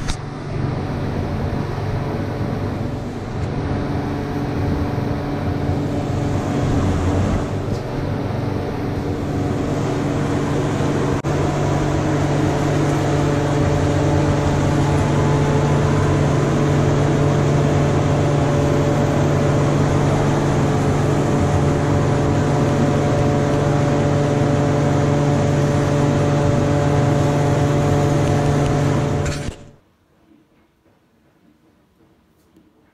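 Powder-coating booth machinery running steadily: a loud, constant hum over a rushing noise. It cuts off sharply just before the end.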